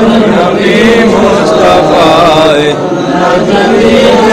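A man's voice chanting a devotional verse in a drawn-out melismatic melody over a microphone, the long held notes curling up and down in pitch. There is a short break in the line near the three-second mark.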